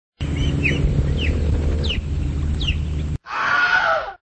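Several short, falling bird-like chirps over a loud steady low hum. Near the end comes a brief, wavering cry.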